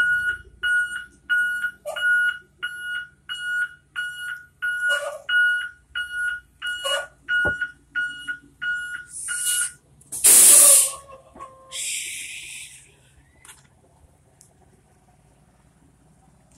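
School bus warning beeper sounding a steady high beep, about three beeps every two seconds, that stops about ten seconds in. A loud burst of air hiss from the bus follows, then a second, shorter hiss.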